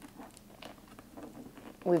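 Faint scattered taps and scrapes of fingers on a cardboard box top, prying at the flap to open it.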